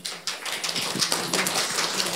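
Audience applauding: a dense, steady patter of hand claps that starts suddenly.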